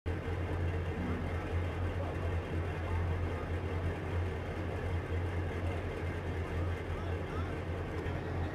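Amphibious assault vehicle's diesel engine running with a steady low drone.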